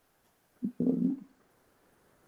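A brief, low vocal murmur from a man, about half a second long, about a second in, just after a faint click.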